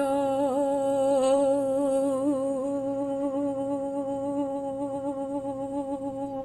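A woman's voice humming one long, sustained note with a slight waver in pitch, vocal toning within a light-language session.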